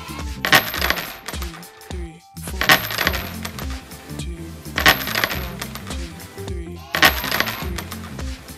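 Sound effect of coins dropping and jingling, four times at about two-second intervals, each with a short ringing tail, over background music with a steady bass line.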